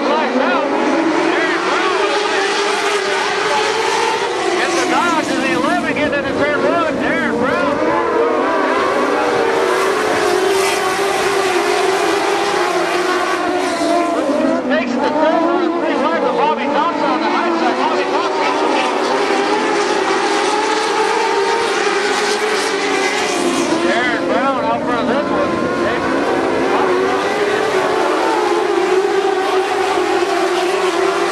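A pack of dwarf race cars running their motorcycle engines hard around a dirt oval. Several engines are heard at once, their pitch rising and falling over and over as the cars lift for the turns and accelerate down the straights.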